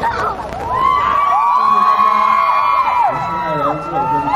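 Crowd of fans cheering, with many high voices rising and falling over one another. It is loudest from about one to three seconds in, then thins out.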